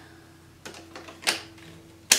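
Hard plastic clicks as the removable battery pack of a PrettyCare W300 cordless stick vacuum is slid into the handle, with a sharper click a little over a second in as it latches into place.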